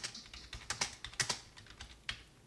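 Computer keyboard typing: an uneven run of about a dozen keystrokes as a terminal command is typed.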